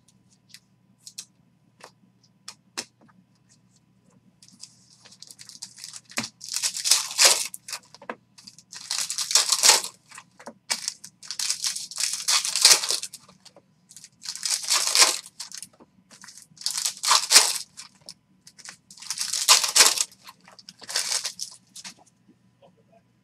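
Foil trading-card pack wrappers being torn open and crinkled by hand: about seven crackly ripping, rustling bursts with short pauses between them, after a few light clicks in the first seconds.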